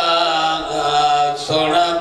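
A man's voice chanting a mournful masaib recitation in long, drawn-out notes, with a brief break about one and a half seconds in before the next phrase begins.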